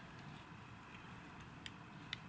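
Near silence, with one faint sharp click near the end as the broken-open metal airsoft revolver and its shells are handled.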